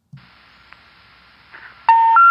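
A faint hiss, then near the end a click and the first, lowest beep of the three rising special information tones. These tones signal a disconnected or out-of-service telephone number.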